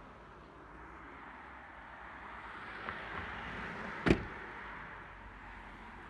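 A car door being shut: one solid thump about four seconds in, over low background noise that swells a little just before it.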